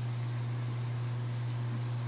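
Steady low hum of reef aquarium equipment, with an even hiss behind it.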